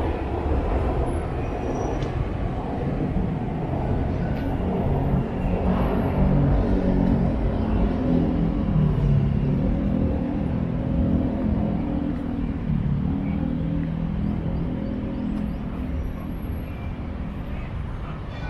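City park ambience: a steady low rumble of surrounding road traffic with indistinct voices.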